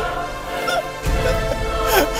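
Dramatic background music with long held tones, under a boy's anguished crying out, with a falling wail near the end.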